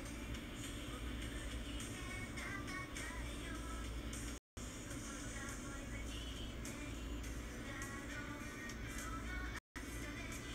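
Pop music with women singing, heard playing through a smartphone's speaker from a stage-performance video. The sound drops out completely for a moment twice, about halfway through and just before the end.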